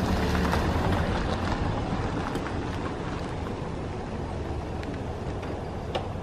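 Low, steady rumble of a vehicle engine idling, a little louder in the first couple of seconds.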